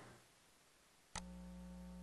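Near silence: faint room tone with a single faint click about a second in.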